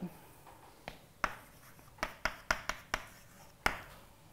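Chalk writing on a blackboard: a string of short, sharp taps and brief scratches as a few words are written, most of them close together about two to three seconds in.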